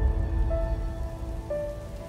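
Logo-reveal intro music: two single held notes about a second apart over a deep low rumble and a noisy hiss.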